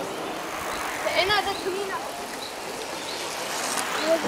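Steady outdoor background noise with a short, distant voice call about a second in.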